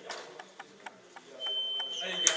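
A single steady high-pitched signal tone, about a second long, starting about one and a half seconds in: the call that ends a time-out. A few faint knocks come before it.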